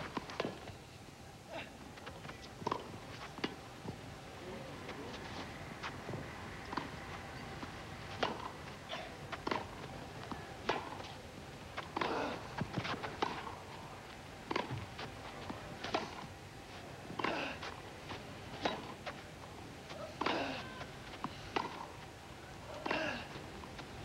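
Tennis balls struck by rackets and bouncing on a grass court during rallies, heard as sharp pops roughly a second apart, broken by short pauses between points.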